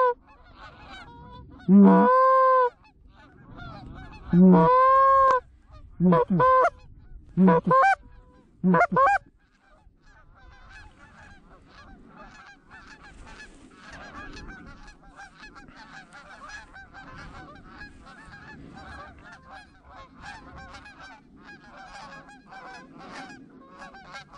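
A goose call blown in a series of loud honks over the first nine seconds, each breaking from a low note up to a higher one, the last ones short and quick. From about ten seconds on, a distant flock of geese calls continuously, many honks overlapping.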